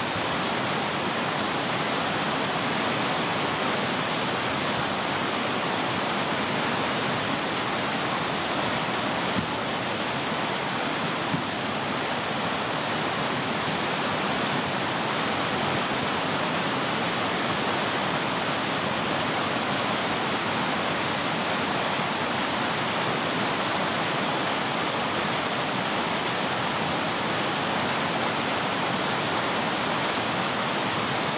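Fast-flowing mountain stream rushing over rocks as white water, a steady, even rush, with two brief faint knocks about nine and eleven seconds in.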